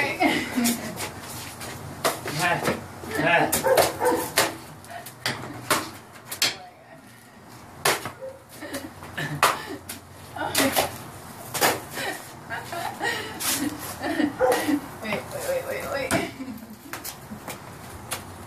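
A stick striking a hanging piñata, with sharp whacks coming at irregular intervals.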